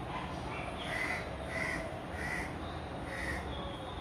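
A bird calling, a run of about five short, repeated calls roughly half a second apart, over a steady low background rumble.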